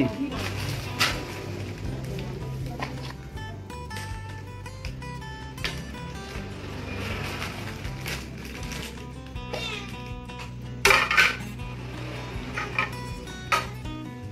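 Plates and dishes clinking and clattering as a small child handles them, in scattered knocks with a louder burst of clatter about eleven seconds in, over soft background music.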